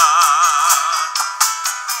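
Live acoustic folk song: a male voice holds a sung note with a wide vibrato for about the first second, over acoustic guitar and regular cajón strokes. The sound is thin and tinny, with no bass at all.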